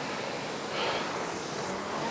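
Concept2 RowErg's air-resistance fan flywheel spinning with a steady whoosh that swells slightly about a second in, during an easy cooldown stroke of about 20 strokes a minute.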